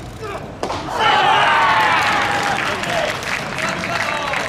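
A pitched baseball pops into the catcher's mitt with a sudden smack about half a second in. Right after it come loud, sustained shouts from many voices at once, players calling out after the pitch.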